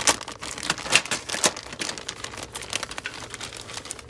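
Clear plastic bag crinkling as it is opened and a plastic model-kit sprue is pulled out of it. It is a quick, dense run of sharp crackles, heaviest in the first couple of seconds and thinning out after.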